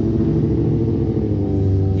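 A motor vehicle engine idling steadily, a constant low hum with a fine regular pulse, its pitch shifting slightly about a second and a half in.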